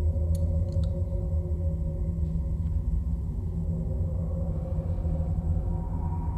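A low, steady droning hum with faint held tones above it, from a dark ambient film soundtrack. A couple of faint clicks come within the first second.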